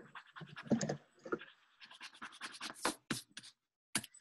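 Quick, irregular scratching and rustling close to a microphone, a fast run of short scrapes, ending in a single sharp click.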